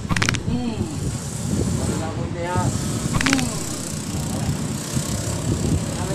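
Faint voices talking in the background over a steady low rumble, with two brief high-pitched sounds, one at the start and one about three seconds in.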